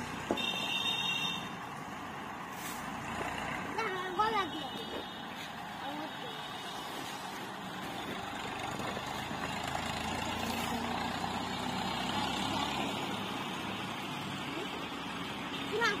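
Steady rushing outdoor background noise, with a brief high, horn-like tone about half a second in and short calls from a voice around four seconds in.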